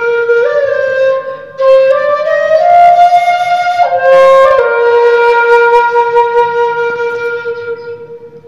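Bamboo bansuri flute playing a slow melody, with a brief break about a second and a half in. From about halfway it holds one long closing note that fades away.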